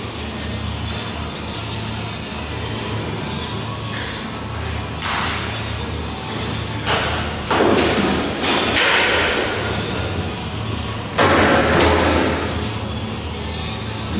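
Dough being slapped and pressed on a metal-topped worktable: a run of dull thuds with swishing slaps, starting about five seconds in, bunched around the middle and loudest about eleven seconds in, over a steady low hum.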